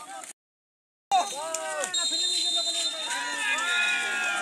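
Players shouting and calling across an open football pitch, with a steady high-pitched tone running under the voices from about two seconds in. Near the start the sound cuts out completely for almost a second, then comes back abruptly.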